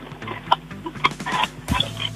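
Choppy, broken-up sounds coming down a telephone line over a steady low hum as a caller is being connected.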